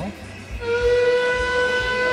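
Steam locomotive whistle: a single held note with strong overtones, sounding from about half a second in.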